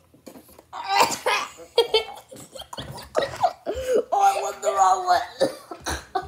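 Children laughing in repeated bursts, mixed with bits of talk, starting about a second in.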